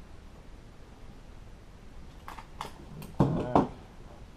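Hand stapler tacking vinyl upholstery pieces together: a few light clicks, then two loud sharp clacks about a third of a second apart near the end.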